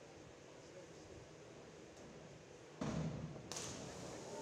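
Diving springboard thudding under a diver's hurdle and takeoff about three quarters of the way in, followed moments later by the splash of the diver entering the pool.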